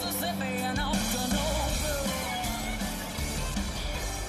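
Background music in a rock style, playing steadily under a replay transition.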